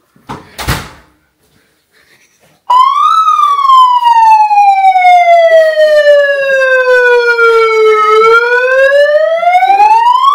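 A short rustling noise, then a loud electronic siren wail from a handheld siren starts abruptly about three seconds in. It jumps briefly higher, slides slowly down in pitch for about five seconds, then climbs again near the end.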